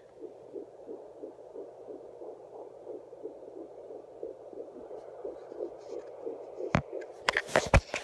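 A pocket fetal Doppler's speaker playing a heartbeat as rhythmic whooshing pulses, about two a second, which fits the 120 beats a minute on its display. Near the end come several sharp knocks and thumps as the phone that is recording is dropped.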